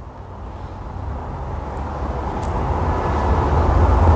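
A low, steady rushing rumble that grows gradually louder.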